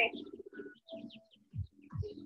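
Faint bird calls, with a few soft low thuds near the end.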